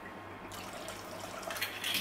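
Rum trickling from a small glass bottle into a plastic tub of liquid sorrel sauce, a faint pour.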